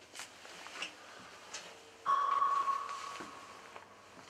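A few light clicks and knocks, then a sudden single high tone about halfway through that rings on and fades away over nearly two seconds.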